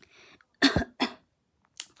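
A woman coughing twice, short and sharp, the first cough louder.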